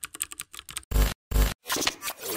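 Logo-animation sound effects: a quick run of glitchy clicks, then two deep bass hits about half a second apart, then a noisy whoosh.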